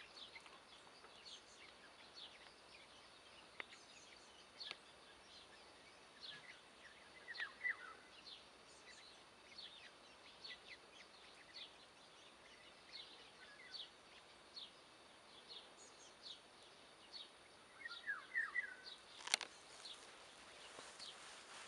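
Faint, scattered chirps of small birds over quiet outdoor background noise, with a sharp click near the end.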